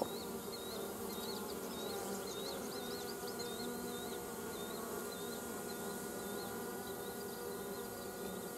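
A colony of honeybees buzzing at the hive entrance, a steady hum of many wingbeats from bees stirred up after their hive was jostled. A repeated high chirp, about two to three a second, sounds in the background and fades out around the middle.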